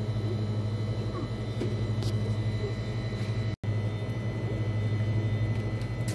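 Steady low mechanical hum of store equipment, such as ventilation or refrigeration. It cuts out for an instant a little past halfway.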